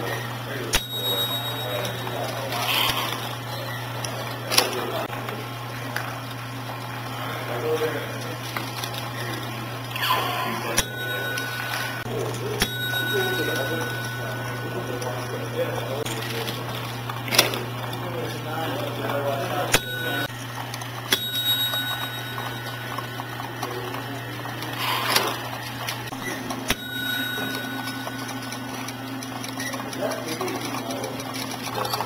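Several small mechanical contraptions built from Lego, K'Nex and Meccano running together, heard as a steady low hum with irregular sharp clicks and knocks from their moving parts. A few short high-pitched tones come and go, with voices in the background.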